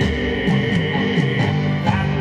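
Live rock band music, instrumental between sung lines, with a moving melody line in the low register under sustained higher tones.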